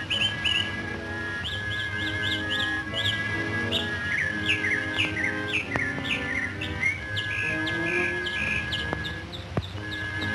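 Bird chirps, quick short calls that fall in pitch, repeated throughout over background film-score music with a long held high note and lower sustained notes.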